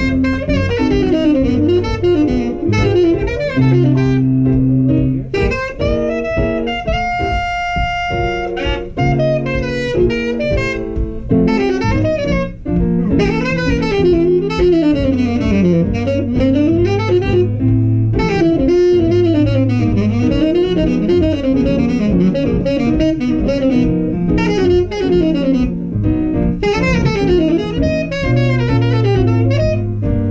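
Tenor saxophone playing a live jazz solo, with fast runs up and down and one long held high note about seven seconds in. Piano, guitar and a rhythm section accompany it.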